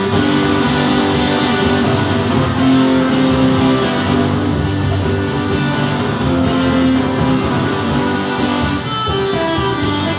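A small live acoustic band: several acoustic guitars strumming chords together, with a cajon.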